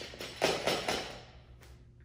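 Accordion-style folding laundry drying rack rattling and clacking as it is pushed down from the top in a failed attempt to collapse it: a quick cluster of clicks about half a second in that dies away, then one small click near the end.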